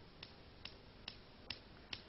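Near silence: a low hiss with faint, short clicks at an even pace of about two a second.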